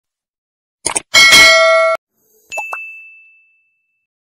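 Subscribe-button animation sound effects. A short double click comes just before a second in, then a loud, bright bell-like ringing that cuts off abruptly at two seconds. A single high ding follows at two and a half seconds and fades out over about a second.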